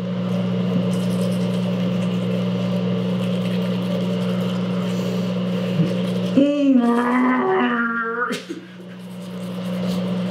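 Bathroom ceiling exhaust fan running with a steady hum, with a toothbrush scrubbing faintly. About six seconds in, a man's voice hums or groans for about two seconds through a mouthful of toothbrush.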